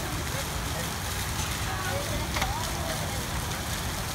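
Steady rushing of water from a pool's rock waterfall and fountain, with faint distant voices and a single click a little past halfway.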